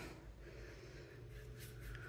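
Faint brushing of a paintbrush stroking wet acrylic paint across a canvas panel, with a short, slightly louder noise near the end.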